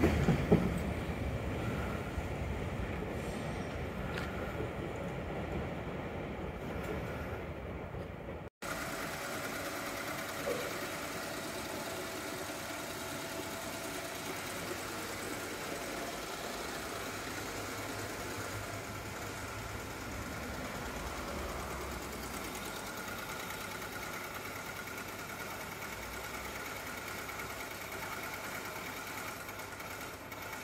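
A train's running rumble, loudest at the start and fading over the first eight seconds as it moves away. After a sudden break, a steady hum with faint high tones continues.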